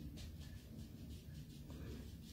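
A thin makeup spot brush tapping cream colour corrector onto the skin of the jaw: quick, soft, faint taps, several a second, over a steady low hum.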